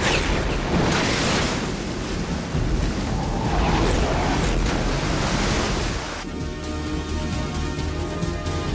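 Rushing noise of cartoon jet craft in flight, a steady hiss over background music, which cuts off about six seconds in, leaving the music alone.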